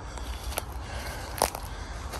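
Two crackling footsteps on dry forest-floor litter, about a second apart, over a low steady rumble.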